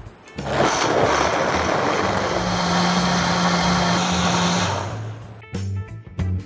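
Countertop blender running, grinding cooked corn kernels and water into a smooth purée. It starts about half a second in, holds a steady whirr, and winds down about five seconds in.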